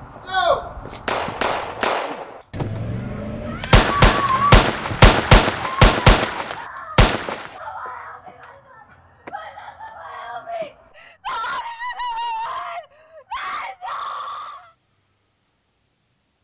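A burst of gunshots, about eight sharp, loud shots over three seconds, followed by a person crying out and wailing, which cuts off suddenly near the end.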